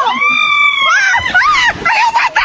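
Women screaming as a floating pontoon tips under them: one long high scream, then shorter wavering cries, with a splash of water in the second half.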